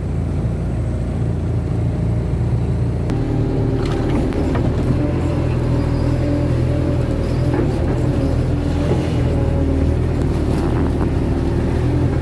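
Kato excavator's diesel engine running steadily. About three seconds in, as the bucket digs in the mud, its note changes and becomes busier, with a few light knocks.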